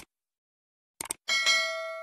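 Subscribe-animation sound effects: a short click right at the start and a quick double click about a second in, then a bright notification-bell ding that rings on and fades away.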